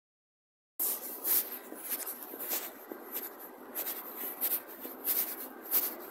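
Footsteps on a stone-tiled floor, starting about a second in, with a regular step about every two-thirds of a second.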